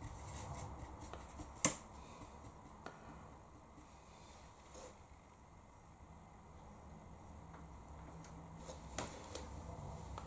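Quiet room tone with a few faint taps and clicks of a paintbrush working a watercolour palette and paper, the sharpest click about one and a half seconds in.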